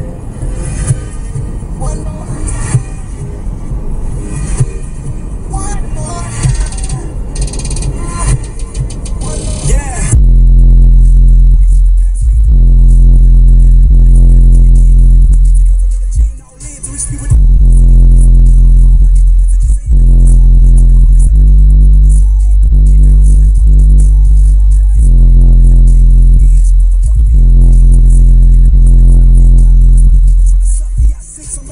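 Bass-heavy electronic hip hop track played very loud on a car stereo with three 18-inch subwoofers, heard inside the cabin. After about ten seconds the deep bass drops in and dominates. It cuts out briefly twice.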